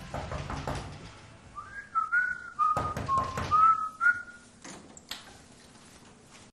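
A person whistling a short phrase of about six notes that dip in pitch and then climb again, with a few soft knocks among the notes.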